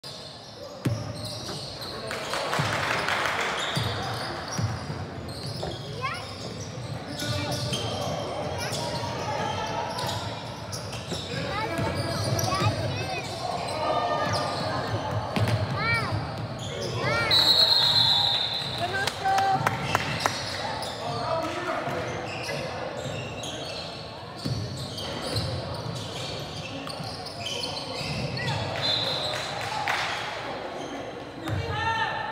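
Basketball game in a large echoing gym: a ball bouncing on the hardwood court, shoes squeaking, and players' and spectators' voices. About halfway through, a short referee's whistle blast sounds during a scramble for the ball, the loudest moment.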